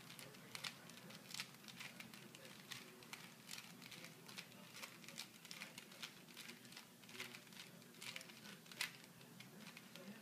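Rubik's cube faces being turned by hand: a run of quiet, irregular plastic clicks and clacks, a few to several a second.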